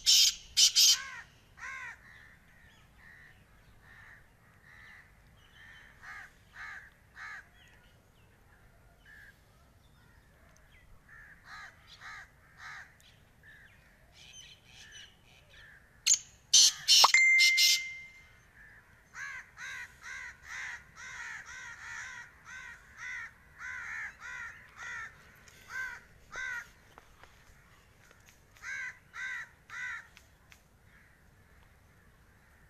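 Black francolin calling: loud, harsh bursts of calls right at the start and again about 16 seconds in. Between and after them run many softer, evenly repeated bird calls.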